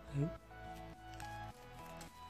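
Quiet instrumental background music with held notes that change pitch every half second or so, under one brief spoken word near the start.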